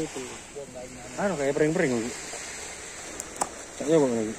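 A man's voice speaking briefly over a steady hiss of background noise, with two quick sharp clicks about three seconds in.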